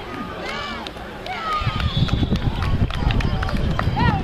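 Voices of players and spectators calling out across an outdoor rugby pitch, with a few sharp clicks. A low rumble comes in about halfway and stays to the end.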